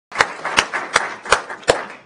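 Audience applauding, with one clapper close by landing sharp claps about three times a second over the spread of the others' clapping.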